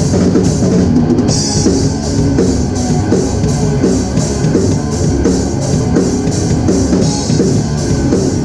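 Hardcore punk band playing live: distorted guitar, bass and a drum kit, with cymbals struck in a steady, even pattern. The cymbals drop out for a moment about a second in.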